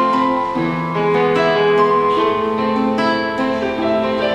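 Acoustic guitar and an electronic keyboard with a piano sound playing an instrumental song together: plucked guitar chords under a keyboard melody, with no singing.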